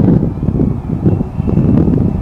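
Wind buffeting the microphone: a loud, uneven low rumble that swells and dips.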